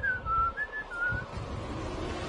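Whistling: a short phrase of four notes, some gliding down, over the first second and a half.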